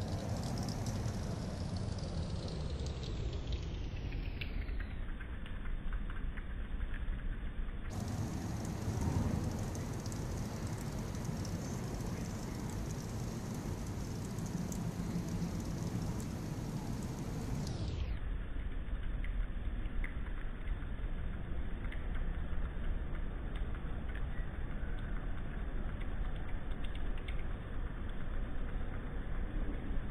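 Steady outdoor background noise, mostly a low rumble, with faint scattered ticks.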